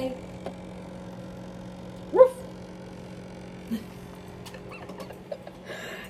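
A small dog gives one short vocal call about two seconds in, a whine-yip that rises sharply in pitch, as he talks back with attitude. A fainter short grunt follows near four seconds, over a faint steady low hum.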